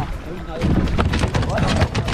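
A speared cobia is hauled over the side of a boat onto the deck: a run of knocks and thumps over a low wind rumble on the microphone.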